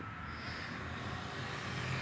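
Road traffic: a car on the street, a steady low engine-and-tyre hum that grows slightly louder.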